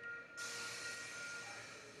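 A steady hiss starts suddenly about half a second in and runs on, over faint steady high-pitched tones.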